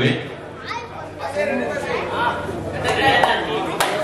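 Overlapping voices of a crowd of spectators chattering around the court, with one sharp click near the end.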